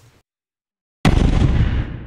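Silence, then about a second in an explosion sound effect: a sudden boom with a heavy low rumble that fades away over about a second and a half.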